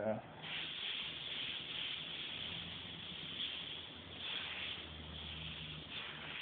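Airbrush spraying paint, a steady hiss of compressed air and paint that starts about half a second in and holds evenly, run at about 35 to 40 psi while pinstriping on fabric.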